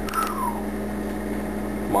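Steady low hum of room tone through a pause in talk, with a man's voice trailing off at the start and starting again near the end.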